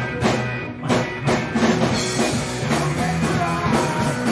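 Live rock band playing: electric guitar, electric bass and drum kit, with sharp drum hits about twice a second in the first half before the playing fills out.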